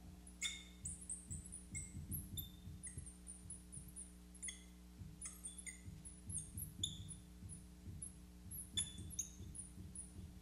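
Marker writing on a glass lightboard: a run of short, high squeaks from the tip dragging across the glass, with soft low knocks as the pen strokes and lifts. A faint steady electrical hum lies underneath.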